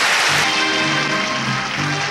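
Audience applauding, with music of long held notes coming in underneath about half a second in, right after a winner's name is read out.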